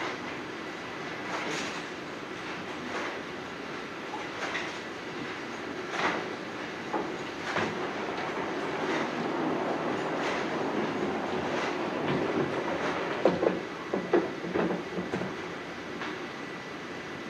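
Duckpin bowling alley sound: a steady low rumble of balls rolling, with scattered sharp knocks and clacks of balls and pins, several in quick succession near the end.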